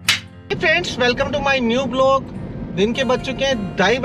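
A single sharp snap at the very start, the sound effect of a clapperboard transition, followed by a voice speaking over music.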